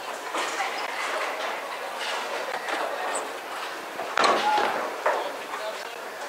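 Bowling-alley din: steady mechanical noise from the lane machinery resetting and balls rolling, with background voices. A sharp knock comes about four seconds in and another about a second later.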